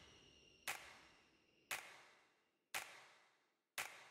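Four faint, sharp clicks, evenly spaced about one a second, each ringing out briefly.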